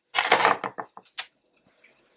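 A brief scraping rustle, then a few light taps, as cut lemon halves are picked up off a cutting board and handled.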